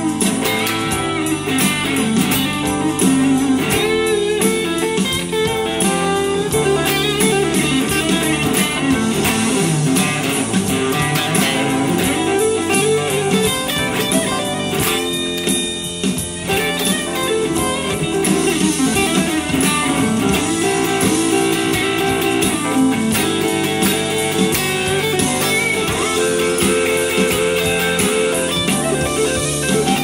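Electric guitar, a Fender Stratocaster, played through a Yamaha THR desktop amp: continuous lead playing with quick single-note runs and bent notes.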